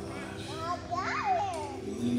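A small child's high voice babbling in a rising and falling sing-song for about a second and a half, over soft, held music chords.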